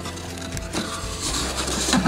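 Cardboard mailer box being handled as its lid is flipped open and pushed back: scraping and rustling of cardboard, busier in the second half.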